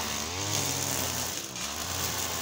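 Motorized brushcutter (roçadeira) engine running steadily at a distance, its pitch wavering slightly, with a brief dip about one and a half seconds in.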